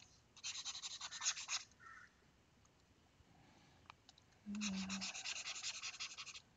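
A stylus scrubbing back and forth on a drawing tablet while erasing, in two scratchy bouts: a short one near the start and a longer one in the second half.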